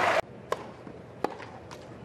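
Crowd noise cuts off abruptly just after the start. Then, over quiet court ambience, a tennis ball gives two sharp knocks about three-quarters of a second apart, followed by a fainter one.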